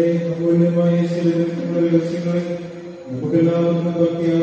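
Chanting in long held notes, with a brief break about three seconds in before it resumes.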